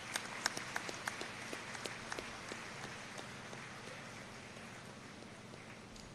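Scattered hand claps that swell into light applause and then die away over the next few seconds.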